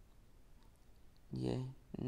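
Quiet room tone, then a single short click near the end: the tab of the Kia Sonet's manual day/night rear-view mirror being flipped by hand.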